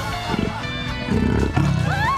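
Low, rough gorilla-like growls over background music. A woman starts screaming right at the end.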